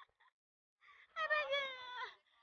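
A high-pitched, drawn-out vocal squeal or call from a person, held for about a second and starting a little past the middle, dipping slightly in pitch toward its end.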